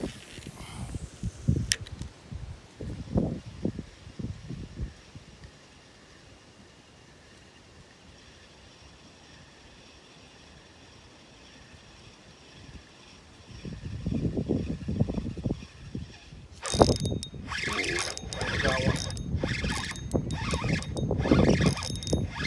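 Spinning reel being cranked, its mechanism clicking and rattling. It is sparse and quiet through the middle, then from about three-quarters of the way in the clicking turns loud and busy as a largemouth bass is hooked and the rod bends hard.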